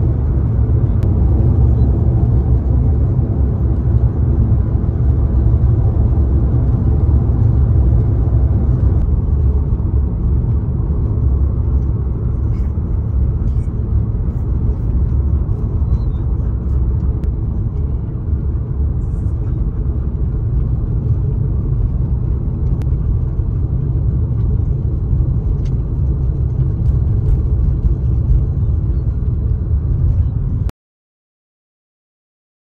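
Steady low rumble of road and engine noise inside a moving vehicle's cabin at highway speed.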